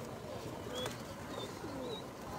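Caged domestic fancy pigeons cooing, faint low rolling coos at scattered moments, with a few short high chirps mixed in.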